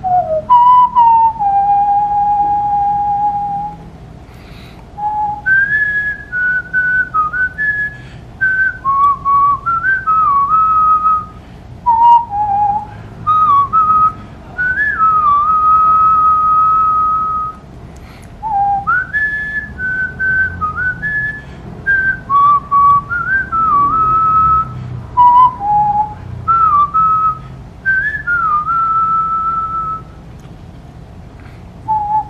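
A man whistling a song melody by mouth: one clear, pure note at a time, stepping and sliding between pitches in phrases with short breaths between them, some notes held for a second or two.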